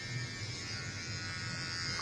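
Electric hair clipper running with a steady buzz as it cuts the short hair at the nape of the neck for an undercut.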